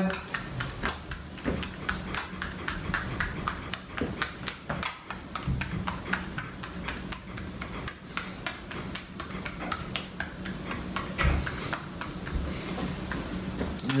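Quick light clicks and taps, several a second, as the casing of a stuffed venison sausage coil is pricked with a pin against a granite countertop to let trapped air out.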